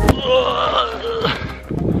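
A person's drawn-out vocal sound with wavering, gliding pitch, over faint background music with a beat; talking begins near the end.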